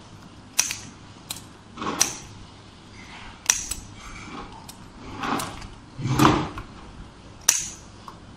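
Large scissors snipping through paper: a string of short sharp snips at irregular intervals, about one a second, a few of them duller.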